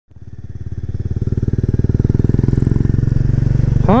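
Kawasaki 250TR's air-cooled single-cylinder four-stroke engine running steadily at low revs with an even, pulsing exhaust beat, fading in from silence over the first two seconds.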